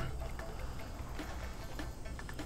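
Quiet outdoor street background: a steady low rumble with a few faint ticks.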